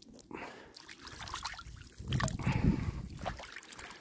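Hands splashing and rinsing in shallow river water at the bank: irregular sloshing and trickling, loudest for about a second halfway through.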